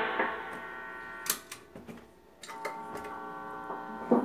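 Ibanez ARZ200 electric guitar: a chord decaying, a few light clicks of pick and fingers on the strings, a brief hush about two seconds in, then a soft note ringing quietly.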